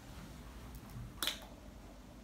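Plastic water bottle being opened by hand: one sharp crack of plastic about a second in, as the cap is twisted off.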